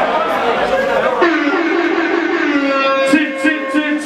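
Room noise from a crowd, then from about a second in a man's long, drawn-out shout through the PA, held on one slightly wavering pitch for nearly three seconds, with a few sharp ticks near the end.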